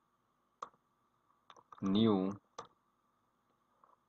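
A few sharp, isolated clicks of computer keys being pressed, about a second apart, as code is entered with autocomplete.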